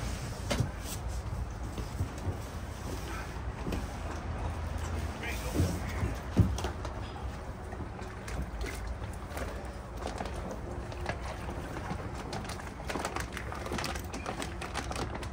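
A clear plastic fish bag crinkling and water sloshing as a koi in its bag is lowered into a pond. There are scattered short crackles and a couple of louder knocks about six seconds in, over a steady low rumble.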